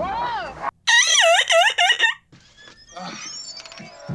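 A high-pitched voice making loud, repeated rising-and-falling vocal swoops for about a second, followed near the end by a short laugh.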